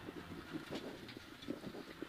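Faint engine and road noise inside a Suzuki Swift rally car on the move, a low steady hum with a few light ticks.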